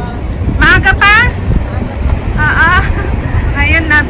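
Outdoor street background on a seafront road: a steady, loud low rumble. It is broken three times by short high-pitched calls that bend in pitch.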